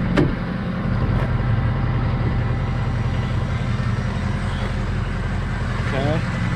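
Ford 6.0-litre Power Stroke V8 turbo diesel idling steadily, with a single sharp click just after the start.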